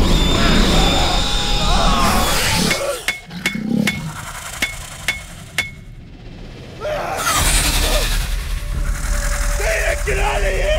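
Horror film soundtrack: a loud, noisy swell of music and sound effects, then a quieter stretch with about seven sharp metallic clicks, each ringing briefly and spaced unevenly. The noisy swell builds back up about seven seconds in.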